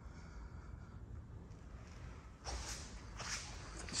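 Quiet room tone, with two short, faint breaths in the second half.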